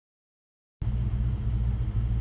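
Vehicle engine running, heard from inside the cab as a steady low rumble that starts a little under a second in.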